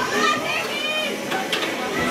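Indistinct chatter of nearby spectators, including high children's voices, with two short sharp clicks about a second and a half in.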